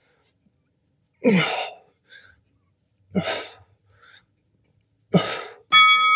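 A man breathing out hard three times, about two seconds apart, in time with slow push-ups. Near the end an electronic workout-timer beep of several steady tones starts suddenly, marking the end of the work interval.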